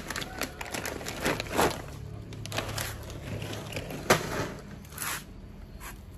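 A plastic snack-chip bag crinkling and rustling in the hands in irregular bursts, stopping about five seconds in.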